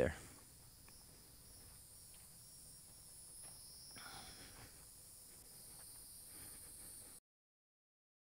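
Faint, steady high-pitched drone of insects in open scrubland. It cuts off abruptly into dead silence about seven seconds in.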